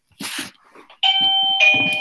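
Two-tone doorbell chime sounding one ding-dong about a second in: a higher note, then a lower note, each ringing on.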